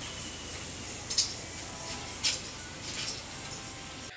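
Steady low background hiss with two short clicks, about a second and about two seconds in.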